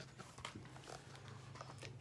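Near silence: a faint steady low hum of room tone with a few soft rustles and clicks as a hardcover picture book is handled and held up.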